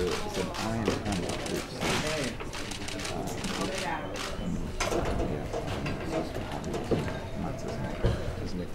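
Indistinct voices chattering in a hall over background music, with a steady scatter of short, sharp clicks.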